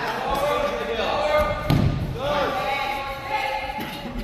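Voices echoing in a large hall, with a single thump on the mat a little under two seconds in.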